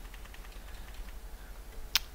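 Computer keyboard arrow key being tapped: a few faint ticks, then one sharp click near the end, over a steady low hum.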